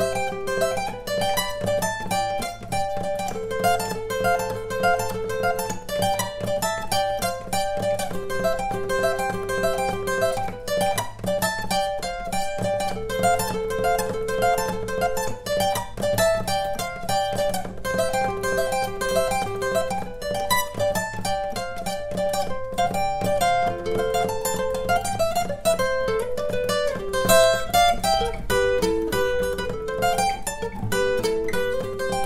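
Acoustic guitar played fast with a pick: a quick stream of single notes in repeating arpeggio figures, in the style of Congolese seben lead guitar.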